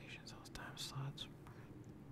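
A man whispering to himself, a few faint hissy syllables in the first second or so, then faint room tone.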